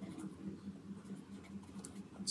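Pen writing on paper: faint, uneven scratching and light ticks as letters are written out by hand, over a steady low hum.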